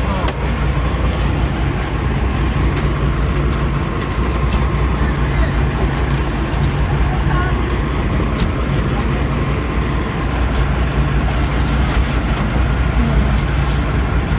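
A sportfishing boat's engines running with a steady low drone, under a haze of wind and water noise.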